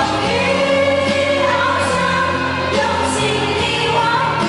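A woman singing a pop-style song into a microphone over amplified backing music.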